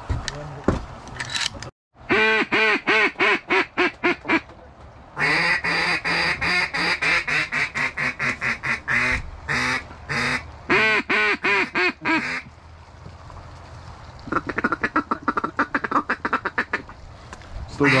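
Hand-blown duck call sounding in three runs of quacking notes, the last a faster string of short notes.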